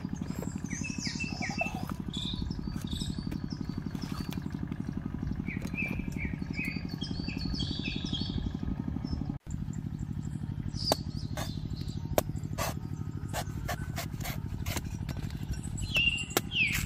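Small birds chirping in short falling calls over a steady low motor-like hum. In the second half come a series of sharp knocks.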